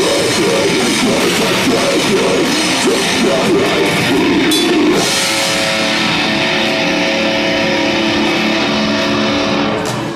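Live metalcore band playing loud distorted guitars and drums. About halfway through, the busy playing gives way to held notes ringing steadily, which cut off near the end.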